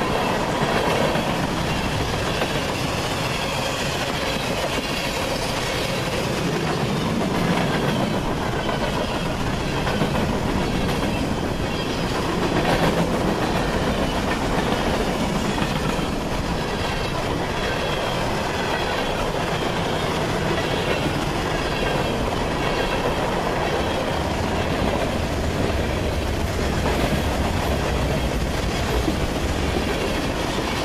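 Cars of a CSX mixed freight train (boxcars, covered hoppers, tank cars) passing close by, their steel wheels rolling over the rails in a loud, steady noise throughout.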